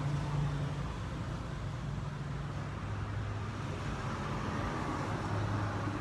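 Steady low droning hum of a running motor, with a pitch that wavers slightly.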